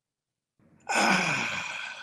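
A man's long sigh, a breathy exhale with his voice in it, falling in pitch. It starts about a second in and lasts about a second.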